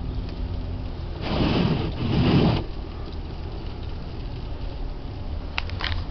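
Car running, heard from inside the cabin as a steady low rumble, with a louder rush of noise about a second in that lasts a second and a half.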